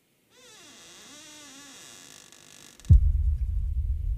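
Film soundtrack sound design: a faint wavering, pitch-bending tone with hiss, then about three seconds in a sudden loud low boom that carries on as a deep rumble.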